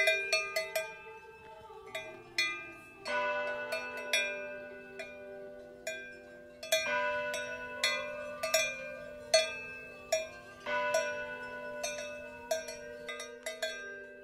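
Cowbells clanking irregularly, some strikes closely bunched and others spaced out, over a steady sustained tone that shifts pitch a few times.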